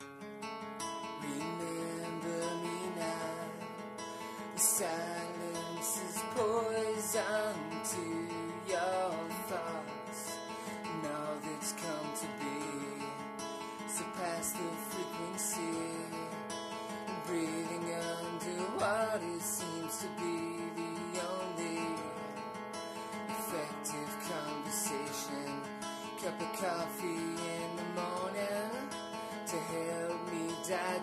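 Acoustic guitar strummed and picked, starting abruptly and running on as the song's instrumental intro.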